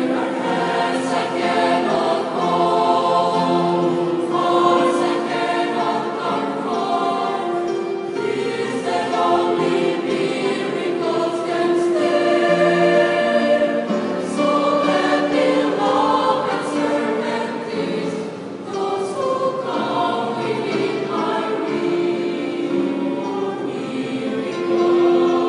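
A choir singing, with long held notes.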